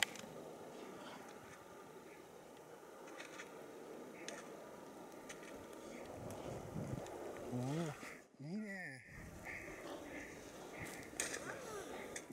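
Skis hissing through soft powder snow with wind on the microphone and a few sharp clicks. About eight seconds in comes a short wordless vocal call that rises and then falls in pitch.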